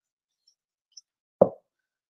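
Dead silence, broken about one and a half seconds in by a single short spoken word from a man.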